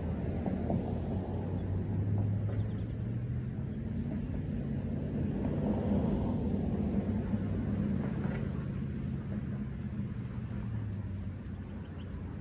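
A low, steady engine hum that swells and then fades about eleven seconds in.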